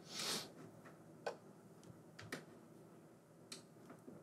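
A few faint, isolated clicks of computer keys as the on-screen chord sheet is scrolled up, after a short soft rush of noise at the start.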